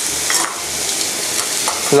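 Beef steak searing on a hot ridged grill pan over high heat, a steady sizzle.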